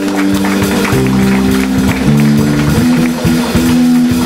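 Live jazz-fusion trio of electric guitar, electric bass and drum kit playing. Held notes change about once a second over a steady run of cymbal and drum strokes.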